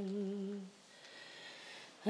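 A woman's voice holds a hummed note, which fades out less than a second in, followed by a near-silent pause.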